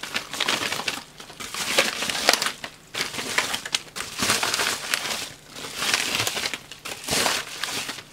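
Plastic packaging crinkling and rustling in repeated irregular bursts: a plastic mailer bag being shaken out and the antistatic component bags inside it sliding out and being handled.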